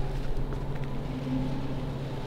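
A steady low hum over a faint rumble, with a few light ticks.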